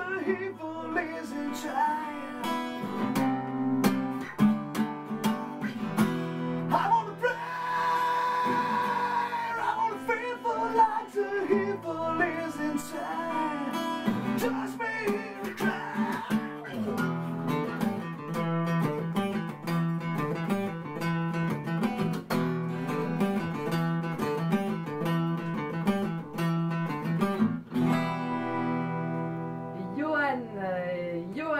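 Live acoustic guitar strummed with a man singing along, solo and unplugged, with one long held vocal note about eight seconds in.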